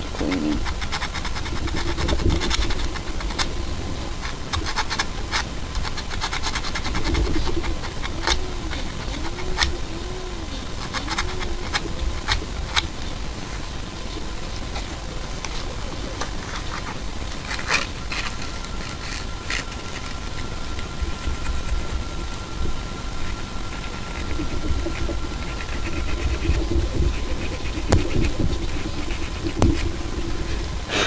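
Emery paper rubbed by hand on a small electric motor's drive shaft, scratching and clicking faintly, over a steady low machine hum. A whine wavers up and down in pitch in the first half, and a steady high tone holds for several seconds after the middle.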